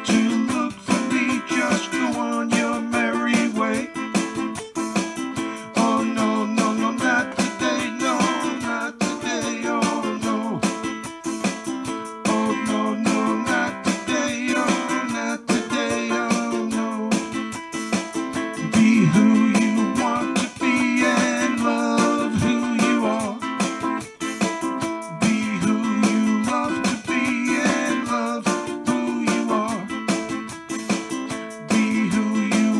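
Music: a plucked string instrument playing a song's instrumental passage without sung words.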